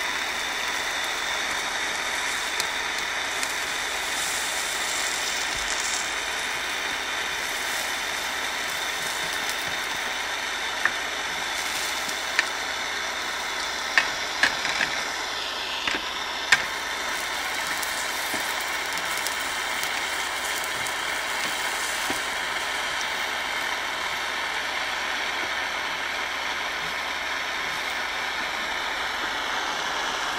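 Aero acetylene soldering torch flame burning steadily, heating a soldering copper with a blue flame. A handful of sharp clicks come through near the middle.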